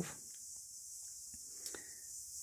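A quiet pause: a faint, steady high hiss with a few faint ticks.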